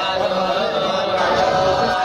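Several voices chanting Sanskrit mantras together in one steady, unbroken chant.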